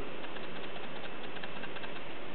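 Pause between sentences of a speech: only the room's steady background noise, an even hiss with no distinct events.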